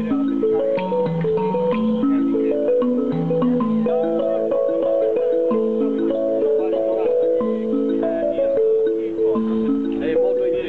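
A melody of held notes, often two or three sounding together and changing about every half second, played on a small toy instrument held on the lap, with faint voices underneath.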